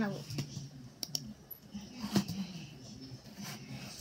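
A handful of sharp computer clicks, spread unevenly over a few seconds, over faint low voice sounds.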